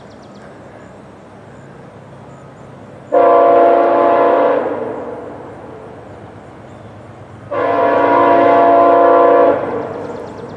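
VIA Rail train 84's locomotive air horn sounding two long blasts a few seconds apart, a steady multi-note chord each time, as it approaches a grade crossing.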